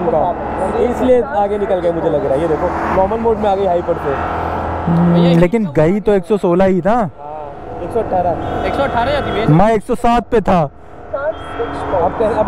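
Men's voices talking and exclaiming, with a steady low rumble underneath that stops about halfway through.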